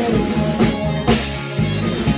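A conjunto band playing an instrumental passage: accordion and saxophone carrying sustained melody notes over a drum kit with a steady beat, guitar and bass.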